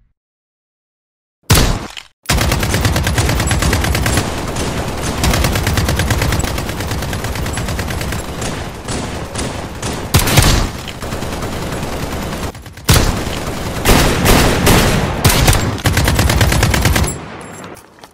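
Automatic gunfire. After a second and a half of silence comes a short burst, then a long stretch of continuous rapid fire with louder bursts, dying away near the end.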